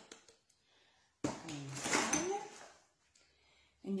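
A brief voice sound beginning about a second in and lasting about a second and a half, with a hissing, rustling noise beneath it.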